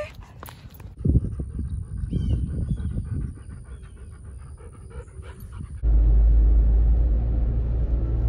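A dog panting, then from about six seconds in a loud, steady low rumble of road noise inside a moving car's cabin.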